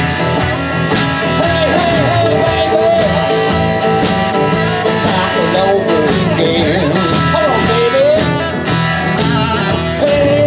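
Live blues band playing: a lead electric guitar line of bending, gliding notes over electric bass, rhythm guitar and drums with a steady cymbal beat.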